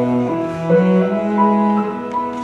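Cello and piano playing together: the cello holds long bowed notes, moving to a new note a couple of times, over the piano.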